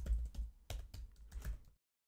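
Computer keyboard typing: a quick run of separate key clicks that stops shortly before the end.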